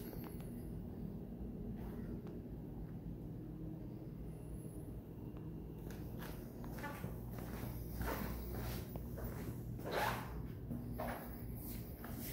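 Soft footsteps on a tile floor, roughly one a second in the second half, over a faint steady low hum.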